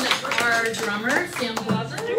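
Talking voices with light clinking and clattering.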